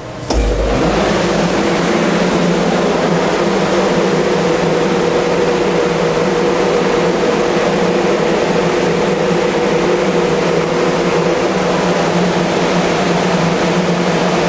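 Paint spray booth's exhaust fan switched on just after the start, with a brief low rumble as it spins up, then running steadily: a loud rush of air with a steady hum.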